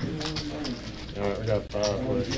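Indistinct voices talking in the background, with a few light clicks.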